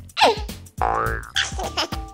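Playful children's background music with a steady thumping beat, overlaid with cartoon 'boing' sound effects whose pitch sweeps down near the start, up about a second in, and down again near the end.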